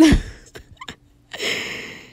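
A woman's voice: a sudden short vocal sound with a steeply falling pitch, then, a little past halfway, a hiss lasting about half a second.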